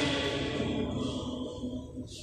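Voices singing a chant-like church song, a held phrase tapering off in the second half.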